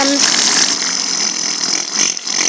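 Steady hissing spray sound effect standing for an ant queen puffing out a cloud of pheromones.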